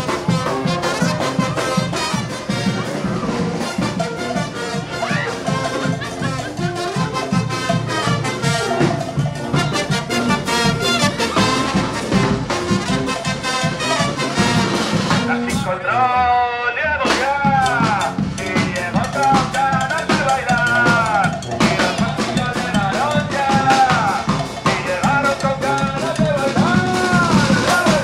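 A charanga street band playing a lively tune on saxophone, trombone and tuba over bass drum and snare drum. The drums and the low brass drop out briefly a little past the middle, then come back in.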